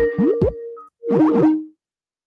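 Comical cartoon-style sound effects: held tones with two flurries of quick plopping, boinging pitch slides, falling and rising, cutting off shortly before the end.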